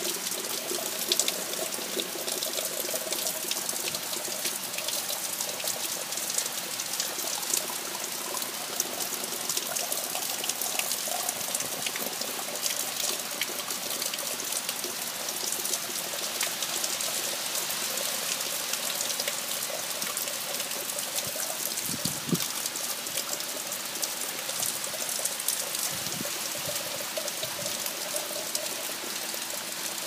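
Heavy tropical-storm rain falling steadily on a flooded lawn and foliage: a constant hiss thick with the patter of drops, with a faint steady hum underneath.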